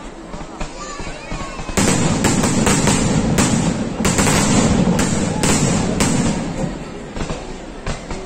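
Aerial sky-shot fireworks firing and bursting overhead. Nearly two seconds in, a rapid string of sharp bangs over dense crackling begins. It runs for about four seconds, then thins out and gets quieter near the end.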